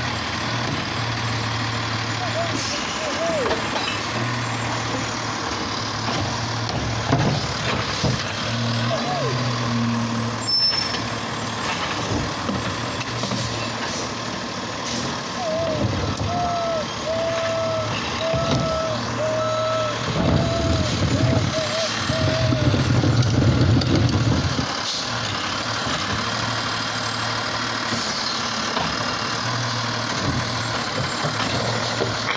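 Automated side-loader garbage truck running at the curb, its diesel engine surging several times as the hydraulic arm grabs and lifts a wheeled trash cart. A short hiss of air brakes comes partway through, and a few short beeps sound near the middle.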